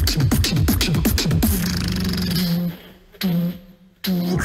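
Solo beatboxing into a handheld microphone: quick clicks and snare hits over repeated falling bass drops for about a second and a half, then a held low bass hum that fades out. A short hum comes back a little after three seconds in, followed by a near-silent break just before the end.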